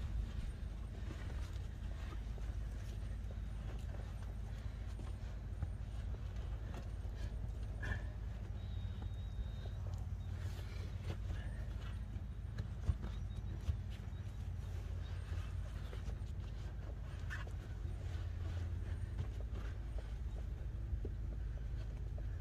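Faint scattered knocks and rubber scuffing as a Farmall Super A tractor tire's inner tube, stuck on the steel rim, is pulled and worked loose by hand, over a steady low rumble.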